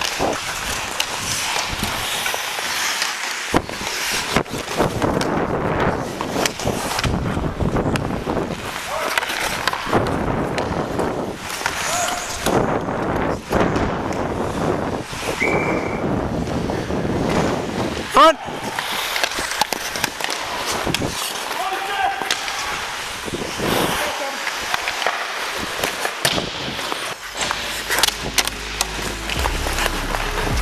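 Ice hockey skates scraping and carving across the ice, heard close up from a player's helmet camera, with frequent sharp clacks of sticks and puck and a few brief shouts.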